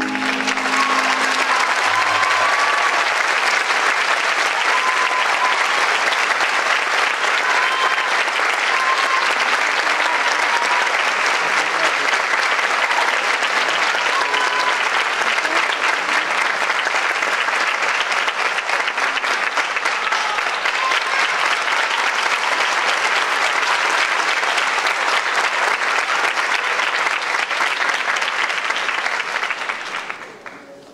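Theatre audience applauding for a dancers' number, the last chord of the recorded ballet music dying out in the first second or two. The applause holds steady for nearly half a minute, then dies away near the end.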